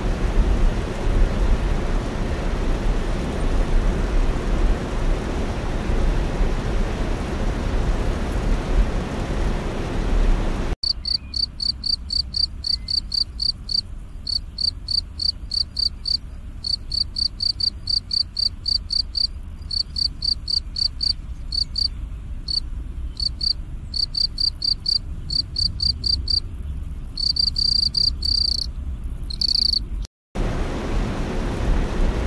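A carpenter bee buzzing steadily. About ten seconds in it cuts abruptly to a field cricket chirping: short, high chirps about three a second, running together into longer trills near the end.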